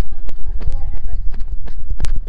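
Quick footsteps on dry, bare ground, about four or five a second, from someone walking briskly with the phone in hand, mixed with handling knocks. A heavy low rumble runs under them, wind buffeting the phone's microphone.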